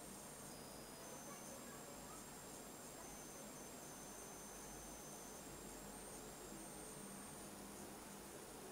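Near silence: the faint steady hiss of room tone, with a few thin, very faint high whines.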